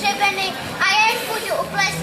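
Children's voices speaking lines. Near the end a low, steady sustained note comes in underneath.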